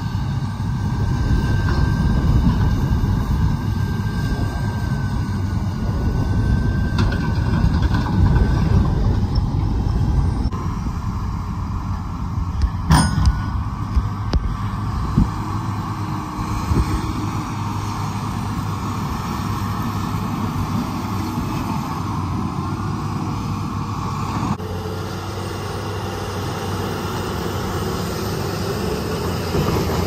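Heavy diesel engines of a Case IH 620 Quadtrac tractor and a John Deere 200C LC excavator running steadily under load while the tractor pulls a dirt scraper as it fills. A single sharp knock comes about 13 seconds in.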